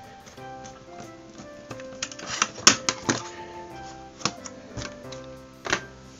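Small screwdriver driving a screw into a black plastic electronics case: a series of sharp plastic clicks and taps, several between about two and six seconds in. Soft background music plays under them.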